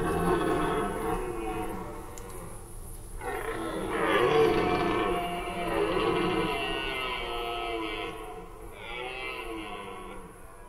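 Red deer stags roaring in the rut: deep, drawn-out calls that fall in pitch. One call fades out early, a longer and louder one fills the middle for about five seconds, and a shorter one comes near the end.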